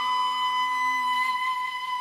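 Background music: a flute-like wind instrument holding one long steady note, with a lower tone underneath that fades out partway through.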